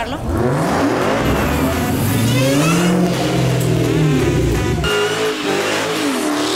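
A sports car's engine revving under acceleration, its pitch climbing steadily and then falling away again before it cuts off near the end.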